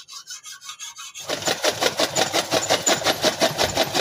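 Motor-driven chaff cutter (toka) running, then chopping green fodder: a light, fast, even ticking of the idle cutter gives way about a second in to a loud, rapid, regular chopping as the fodder is fed through the blades.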